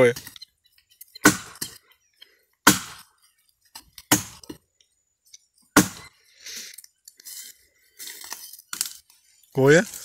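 Hand chopping at a dry jurema trunk: four sharp blows on the wood about one and a half seconds apart, then fainter rustling of branches and a lighter knock.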